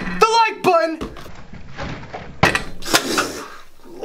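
A shouted exclamation, then a spray bottle of 409 cleaner hissing into a face, with a sharp knock about two and a half seconds in.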